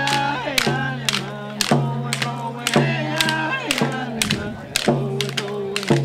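Group of voices singing a traditional song in held, bending notes, over a sharp clacking beat that falls about twice a second.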